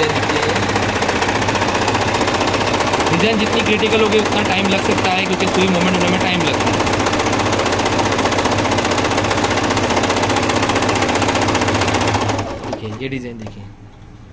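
Singer 8280 household sewing machine running at a steady speed, sewing a dense decorative pattern stitch at a very short stitch length, then stopping about twelve seconds in.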